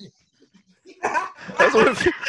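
A woman laughing loudly in a high pitch, breaking out about a second in after a near-quiet pause.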